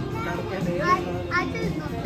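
Children's high-pitched voices calling and chattering, over a steady low hum.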